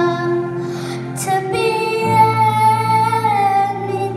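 A young girl singing a slow song into a microphone over instrumental accompaniment, holding one long note for about two seconds that falls away at its end.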